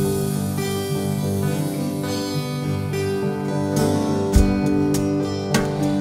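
Live acoustic guitar music, an instrumental passage with no singing, with steady held chords and a few strums.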